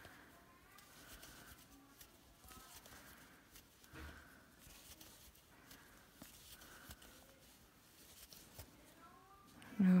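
Faint rustling and soft clicks of yarn being pulled through stitches with a crochet hook while single crochets are worked.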